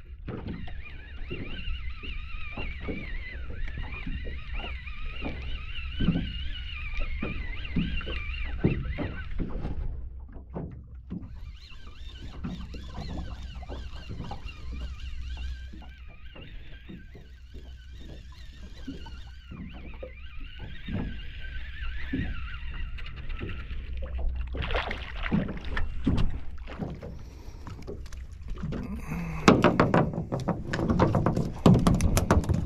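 A Shimano Ocea Conquest baitcasting reel being cranked in three spells with a whirring gear sound, over a steady low rumble and frequent small knocks of water against a small boat's hull. Near the end come louder thumps as the fish is brought aboard.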